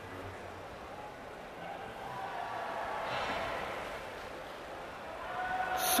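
Steady background murmur of a large exhibition hall, with faint distant voices that swell a little two to four seconds in.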